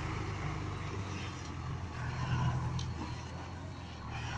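Loaded dump truck's diesel engine running steadily at low speed as the truck moves slowly away.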